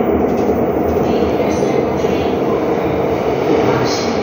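Seoul Subway Line 2 train, trainset R282, pulling into an underground station: a loud, steady rumble of steel wheels on rail.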